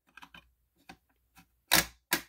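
Simplex 2099-9103 break-glass fire alarm pull station's T-bar handle being pulled down. A few faint small clicks come first, then one loud, sharp plastic-and-metal snap near the end as the handle drops.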